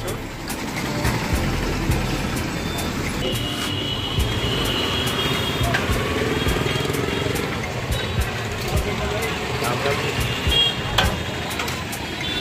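Busy street ambience: auto-rickshaw and motor traffic with a murmur of voices around. A high-pitched beeping sounds for about two seconds a few seconds in, and again briefly near the end.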